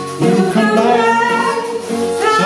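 Live acoustic blues band playing, with a harmonica carrying the lead line over acoustic guitar and hand drum. The lead holds and bends its notes, with a rising slide near the end.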